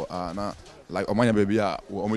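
A man talking in short phrases, with a brief pause about half a second in.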